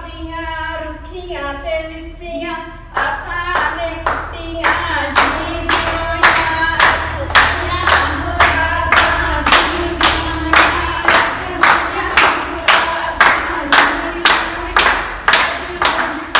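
Women singing a Punjabi folk song for giddha dancing, with rhythmic hand clapping. The clapping comes in strongly about three seconds in and keeps a steady beat of about two claps a second under the singing.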